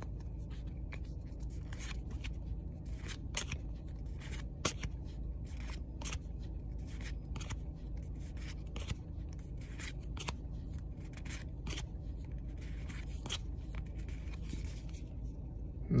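Pokémon trading cards being flipped one by one through a freshly opened pack in the hand, each card sliding off the stack with a short, sharp click or swish about twice a second, over a steady low hum.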